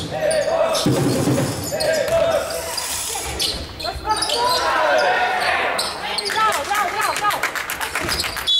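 Basketball being dribbled on a wooden gym floor during a game, with players' and spectators' shouts, in a reverberant sports hall.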